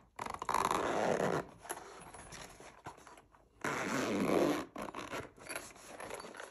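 Zipper of a moulded first aid kit case being pulled open in two long runs. The first run is near the start and the second is about three and a half seconds in, each lasting about a second, with fainter scratching of the zip and case between them.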